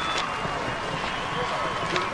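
Steady, indistinct crowd chatter in a large hall, with a few faint held tones underneath.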